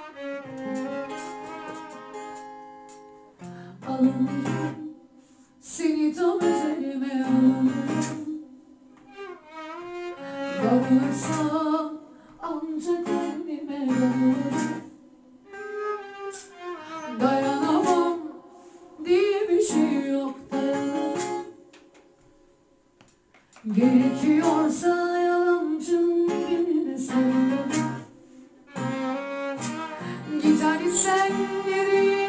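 Live acoustic Turkish music: a violin playing the melody in phrases over a strummed acoustic guitar, with a brief near-silent pause about three-quarters of the way through before the band comes back in.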